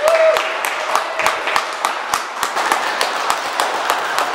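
A small congregation applauding, with individual hand claps standing out clearly in a steady patter.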